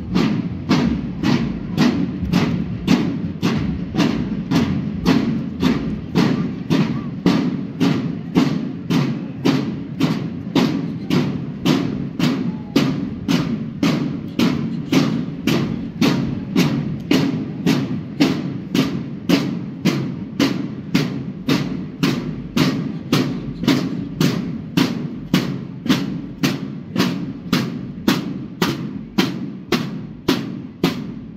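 Marching-band drums, snare and bass, beating a steady march cadence of about two strokes a second.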